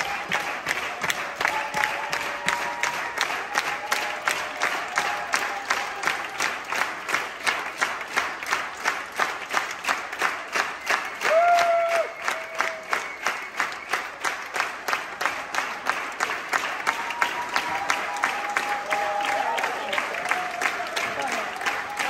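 An audience clapping in unison in a steady rhythm, about three claps a second, with voices calling out over it and one loud call about halfway through.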